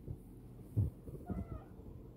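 Domestic cat giving a short, faint meow about one and a half seconds in, while hunting a spider on the floor. Low thumps of handling noise sound around it, the loudest a little under a second in.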